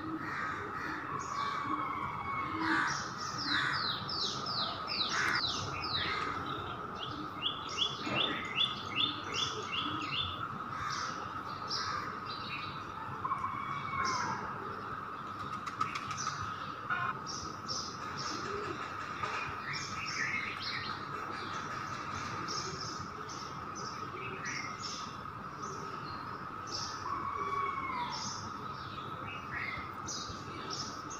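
Several birds chirping and calling, with quick runs of repeated notes about four and eight seconds in, over a steady high hum.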